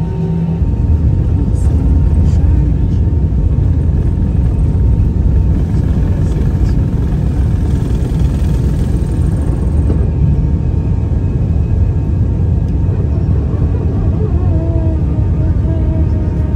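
Airliner's jet engines at takeoff power heard from inside the cabin: a loud, steady low rumble that swells about half a second in as the plane rolls down the runway and lifts off.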